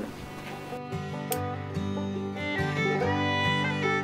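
Background music with plucked and bowed strings in a country style, starting about a second in and growing louder.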